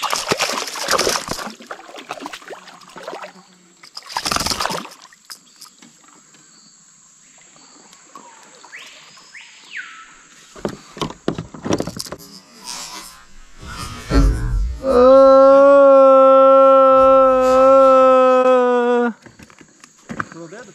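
A hooked fish thrashing and splashing at the water's surface beside a kayak, in two bursts, then being handled on board. Near the end, a loud steady held tone lasting about four seconds cuts off suddenly.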